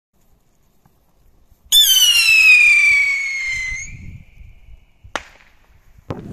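Small firework stick rocket going up with a loud whistle that falls in pitch over about two seconds and fades, then a single sharp bang a second later as it bursts.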